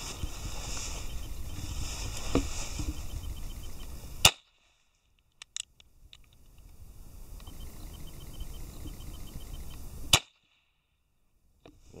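Two sharp pistol shots about six seconds apart from a Kimar Derringer firing small 4 mm Flobert cartridges. Each shot is followed by a brief dropout in the recording, and a few light clicks fall between the shots.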